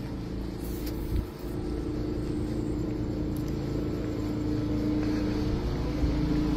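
A motor vehicle engine running steadily, a low rumble with a steady hum that holds at one pitch.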